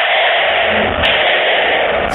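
Steady, muffled hiss from a security camera's low-quality audio track, with a single faint click about a second in.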